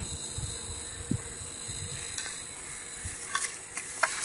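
Steady hiss with a light knock about a second in and a few small clicks and rustles near the end as the camera is moved and handled.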